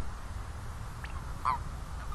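Common toads calling: short, croaky chirps, a faint one about a second in and a louder one about a second and a half in, over a steady low rumble.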